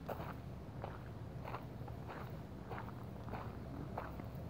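Footsteps of a person walking at a steady pace on an outdoor path, about one and a half steps a second.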